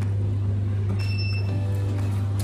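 A steady low hum under faint background music, with a brief high ringing tone about a second in.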